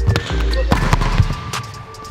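An overhand hand strike slams a volleyball into a hardwood gym floor, giving a couple of sharp smacks and a bang near the middle. Background music with a steady bass runs underneath.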